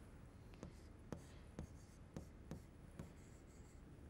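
Faint taps and strokes of a pen writing on an interactive whiteboard screen, a series of short separate touches.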